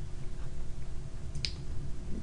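A single sharp computer mouse click about one and a half seconds in, over a low steady room hum.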